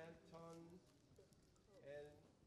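Faint off-microphone voice: a short murmured phrase about half a second in and another sound near the end, with low room tone between.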